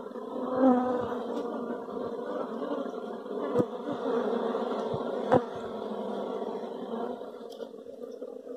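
Dense, steady buzzing of a honeybee colony on its exposed comb, many bees humming together. It fades near the end, and two sharp clicks come in the middle.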